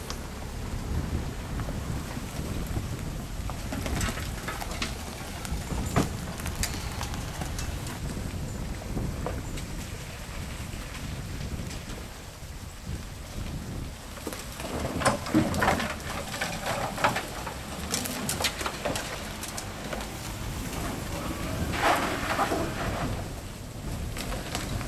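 Suzuki 4x4s crawling slowly down an overgrown dirt track: a low, steady engine rumble with scattered crackles and snaps of brush and twigs against the bodywork and under the tyres, thickest in the second half.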